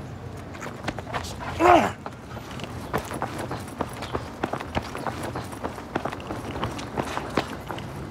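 Running footsteps: sneakers slapping quickly and evenly on concrete sidewalk and asphalt. A short shout cuts in a little under two seconds in.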